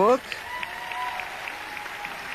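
Steady audience applause.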